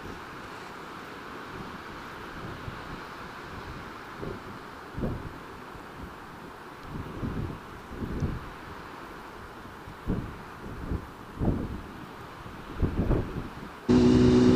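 Wind buffeting the camera microphone in irregular gusts over a steady background hiss.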